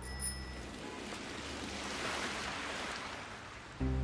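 Rain falling steadily on wet pavement and puddles, an even hiss. Soft background music sits under it and comes back louder near the end.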